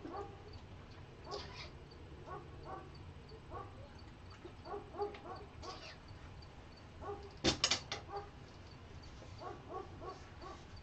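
A dog whining and whimpering in many short, high squeaks, on and off throughout. About seven and a half seconds in there is a brief, sharp clatter, the loudest sound.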